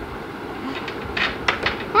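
Steady background hiss with a few faint light clicks about a second in, ending on a girl's short exclaimed "ah!".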